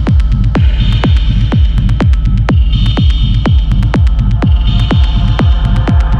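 Industrial techno track: a steady four-on-the-floor kick drum, a little over two beats a second, over a rumbling bass, with a high synth layer that returns about every two seconds.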